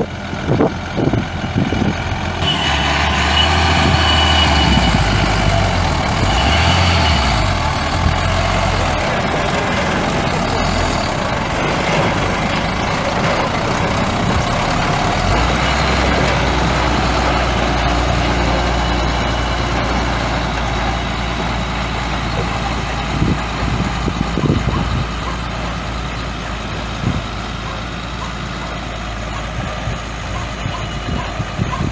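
The Cummins C8.3 six-cylinder turbo diesel of a 1995 Ford L8000 truck running, its note shifting about two seconds in and again midway. A thin steady high tone sounds for several seconds early on.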